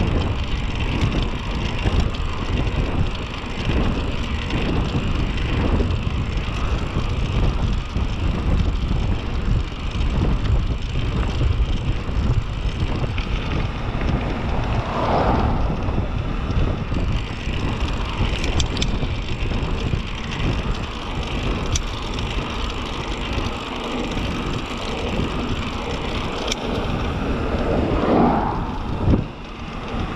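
Wind buffeting the action camera's microphone during a bicycle descent, with steady rumble from tyres on the asphalt. Two brief rising-and-falling tones cut through, about halfway and near the end.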